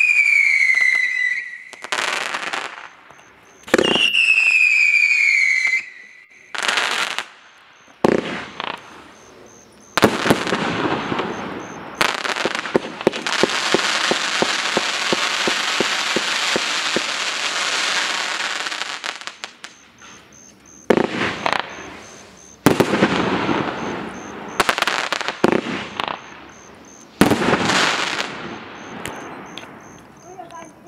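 A 43-shot firework cake firing. Near the start and again about four seconds in, shots go up with falling whistles, followed by a string of sharp launches and bursts. From about 10 to 19 seconds there is a long, dense crackling barrage, and a few more volleys follow before the display dies away near the end.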